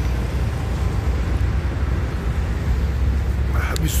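Steady low rumble of street traffic, with a few words spoken just before the end.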